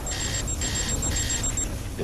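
Electronic warning alarm beeping about twice a second over a low rumble, the beeping stopping shortly before the end.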